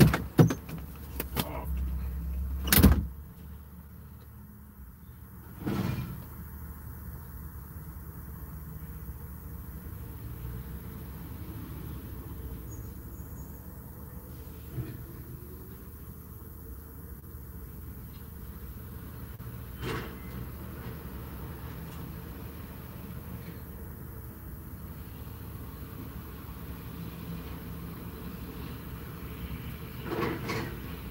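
Low, steady rumble inside a parked vehicle's cabin, louder for the first three seconds and then quieter. Several sharp knocks and clicks come in the first three seconds, with single knocks around six and twenty seconds in.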